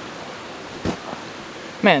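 Steady outdoor rushing noise with a single short knock just under a second in; a man's voice starts near the end.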